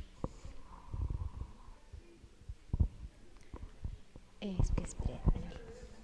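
Low, murmured talk near a microphone, broken by scattered low thumps and knocks.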